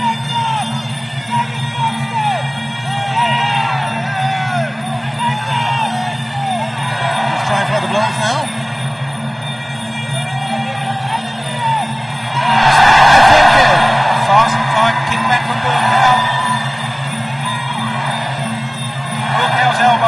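Traditional Muay Thai ring music plays throughout, a winding melody over a steady drone. About 13 seconds in, the crowd swells into loud cheering and shouting for a second or two.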